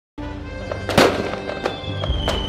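Fireworks bursting over music with held tones: a loud bang about a second in, with a lighter pop before it and another burst near the end.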